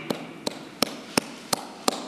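One person clapping his hands slowly: six evenly spaced claps, about three a second.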